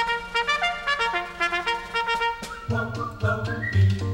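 Military band playing an instrumental passage of a march: a quick run of short, bright brass notes, with low brass and a steady bass beat coming in about two-thirds of the way through.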